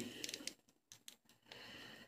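Faint clicks and rustling of hands moving the joints of a plastic action figure, a few small ticks in the first second, then near silence.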